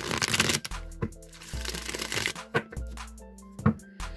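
A deck of tarot cards being shuffled by hand: two bursts of rapid card riffling about a second apart, then a single sharp tap near the end. Soft background music plays underneath.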